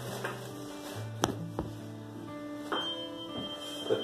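A tuning fork struck about three quarters of the way in, then ringing with a thin, steady high tone, ready for a Weber hearing test on the forehead. Before it come a few sharp clicks of handling.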